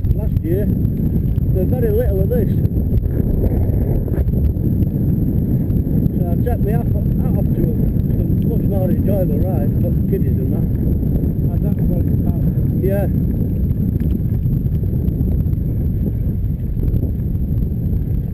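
Steady low rumble of wind buffeting the microphone of a camera on a moving bicycle, with tyre noise from a wet tarmac path; a short knock now and then.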